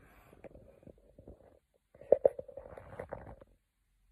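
Phone handling noise as the phone is moved and swung around: faint rubbing and rumbling, then a cluster of sharper knocks and clicks with a faint steady tone about halfway through, dying away near the end.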